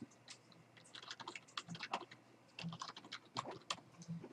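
Faint computer keyboard typing: short, quick runs of key clicks.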